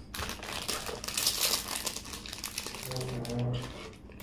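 A crinkly food wrapper being handled and opened, crackling almost throughout and loudest about a second in. A short hummed voice sound comes about three seconds in.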